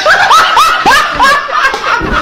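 A man laughing hard in a rapid string of short, high laughs, each rising in pitch, about three or four a second.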